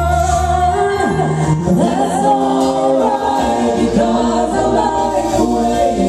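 Live band performance: a female lead singer with backing vocalists singing together over keyboard, bass guitar and drums. A deep bass note sounds under the voices for about the first second.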